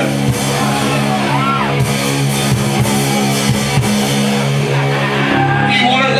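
A live heavy rock band playing loud through a PA: a sustained, distorted guitar and bass chord with drum hits over it.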